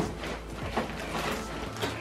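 Quiet handling noise and soft rustling of a full black plastic rubbish bag being lifted by its drawstring handles, over a low steady room hum.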